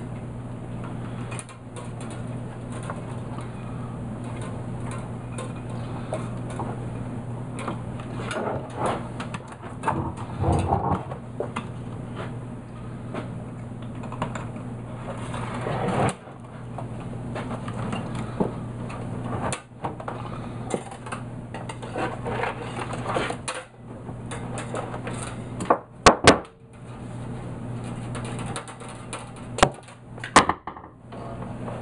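Handling noise on a workbench: plastic roof flashing being shifted and wire being worked, giving irregular rattles, clicks and light knocks over a steady low hum. Two sharp, louder clicks come close together near the end.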